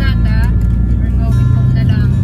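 A song with a singing voice over guitar accompaniment, with the steady low rumble of a moving car underneath.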